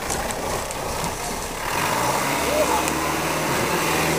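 Land Rover Defender 90 engine running as the vehicle comes down a steep muddy track and drives past; its low, steady engine note comes in more strongly about two seconds in.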